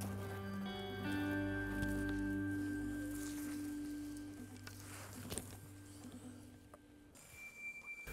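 Soft background music of held, sustained chords that fades out about seven seconds in, followed by a faint, thin high tone.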